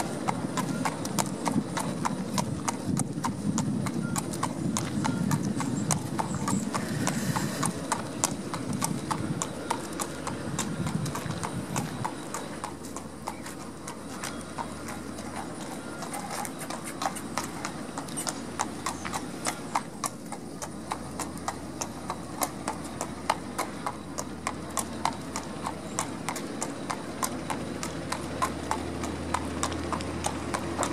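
Shod hooves of a Thoroughbred horse clip-clopping on pavement at a steady walk, with an even rhythm of sharp hoofbeats.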